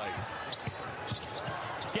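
Basketball being dribbled on a hardwood court, a few dull bounces about two a second, over the steady murmur of an arena crowd.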